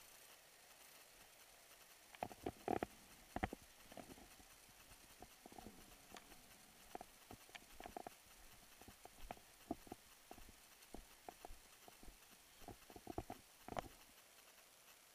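Faint, irregular crunching footsteps and knocks on dry, charred ground as kayaks are carried over it, the loudest a few knocks about two to three seconds in.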